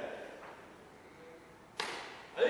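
A single sharp slap near the end: a hand striking a karate uniform, with a short echo off the gym hall.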